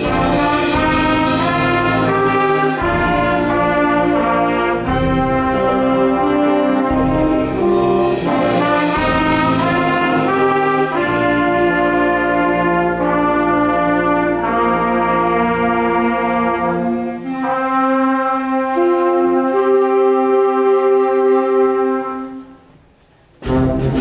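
School concert band playing: brass and woodwinds over regular percussion hits, moving to long held chords without percussion. Near the end the sound drops almost to silence for about a second, then the full band comes back in with percussion.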